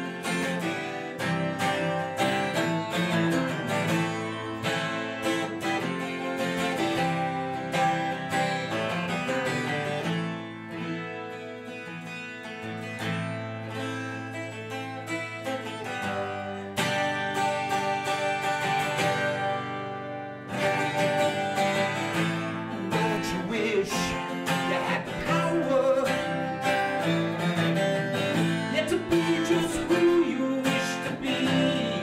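Steel-string acoustic guitar played solo at the start of a song, picked chords ringing on. The playing softens for a few seconds partway through, then grows louder again toward the end.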